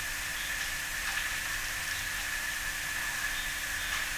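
Steady background hiss with a faint, continuous high-pitched tone.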